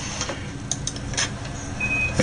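A steady hiss with a few faint ticks, and a brief high beep near the end.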